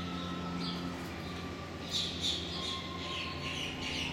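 Background ambience: a steady low hum with faint thin whines, and short bird chirps, loudest about two seconds in.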